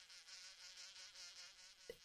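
Faint buzzing of a wasp, its pitch wavering.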